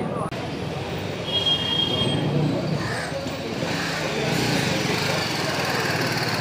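Busy street ambience: steady traffic noise with indistinct background voices.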